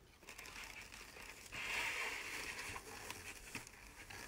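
Faint crinkling of stiff wide ribbon being handled in the bow maker. It is loudest for about a second in the middle, with a faint tick near the end.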